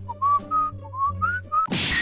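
A cheerful whistled tune of short hopping notes over soft background music. A brief loud rushing noise comes just before the end.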